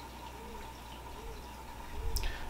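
Faint water sounds from a reef aquarium: soft drip-like blips every second or so over a steady low hum and a thin steady whine.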